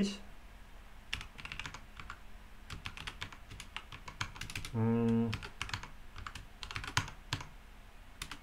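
Typing on a computer keyboard: a run of irregular keystrokes, with a short, steady voiced hum from the typist about five seconds in.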